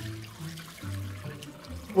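Background music with a low bass line, over the faint sound of homemade chicken stock being poured from a stainless saucepan through a mesh strainer.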